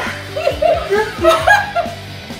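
People laughing and chuckling over background music with a steady bass.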